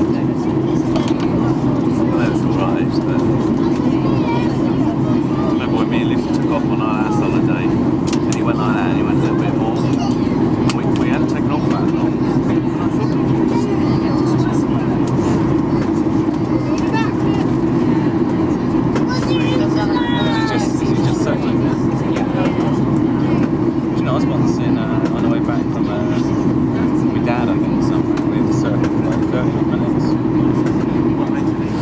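Steady cabin drone of a jet airliner descending on approach, engine and airflow noise heard from inside the passenger cabin as an even low hum, with faint passenger voices underneath.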